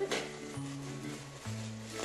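Background music with held low notes that change pitch about once a second.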